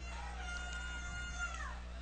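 A distant, drawn-out shout over a steady low hum. The call is held at one pitch from about half a second in, then falls away just before the commentary resumes.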